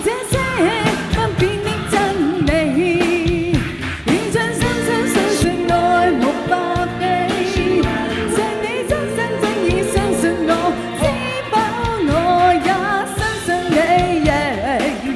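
A woman singing a Chinese-language pop song live into a microphone over an amplified pop backing track with a steady beat.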